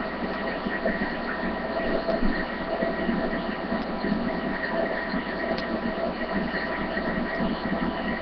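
Steady background hiss with faint constant humming tones and no distinct events, typical of a low-quality webcam microphone's own noise.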